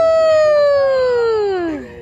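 A person's long, high "woooo" cheer, held and then sliding slowly down in pitch until it dies away near the end.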